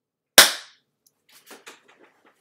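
A single sharp, loud hand clap about half a second in, dying away quickly, followed by a few faint knocks near the end.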